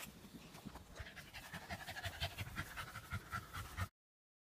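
Staffordshire bull terrier puppy panting quickly and faintly, in a fast, even rhythm that grows a little stronger in the second half.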